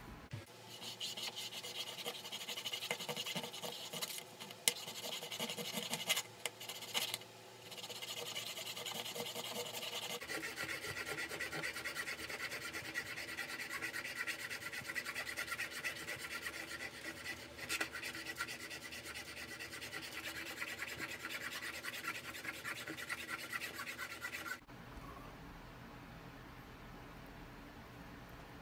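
Steel trimmer blade from an Andis Slimline Pro scraped rapidly back and forth on the 1 Minute Blade Modifier to sharpen the dulled cutting edge. The scraping is continuous, with a few short breaks in the first eight seconds and a change in tone about ten seconds in, and it stops a few seconds before the end.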